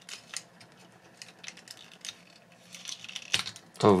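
Small plastic clicks and taps from the hinged leg panels of a Takara Tomy MP-47 Hound Transformers figure being opened by hand. The clicks are scattered at first, then bunch together near the end with one sharper click.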